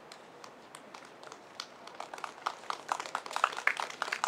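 A small audience clapping: a few scattered claps about a second in, thickening into light applause toward the end.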